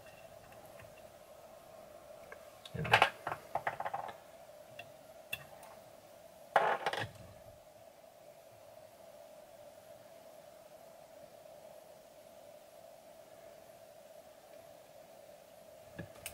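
Faint, steady hum, broken twice, about three seconds and six and a half seconds in, by brief clicking and rustling as hands and a tool work thread at the head of a fly in a fly-tying vise.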